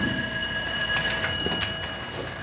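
School bell ringing, a steady high ring that starts just before and fades away after about a second and a half, signalling the end of class.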